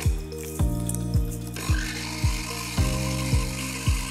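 Electric mini chopper running, its blades chopping dried chillies, heard as a high rushing noise that starts about a second and a half in and stops suddenly at the end. Background music with a steady beat plays throughout.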